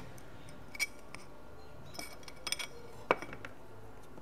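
Glass speedometer lens and thin metal retaining rings clinking lightly as they are handled and set down, a few separate taps with the sharpest about three seconds in.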